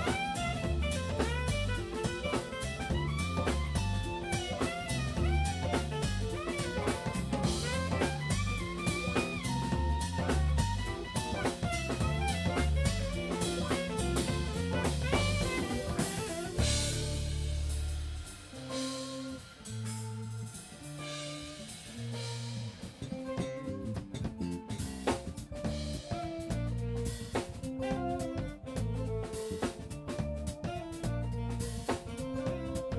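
A live jazz-fusion band rehearsing: drum kit, electric bass, keyboards, electric guitar and saxophone. A bending saxophone lead runs over the groove for the first half. A little past the middle the band suddenly drops to a sparse passage of bass notes and cymbals, then builds back up to the full groove.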